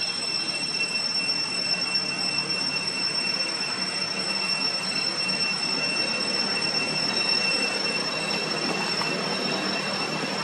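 Steady background noise with a constant high-pitched whine that does not change.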